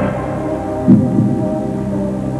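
Game-show suspense music: a sustained synthesizer drone with a low heartbeat-like double pulse about a second in.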